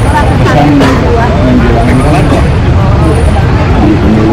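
Voices talking over a loud, steady low rumble.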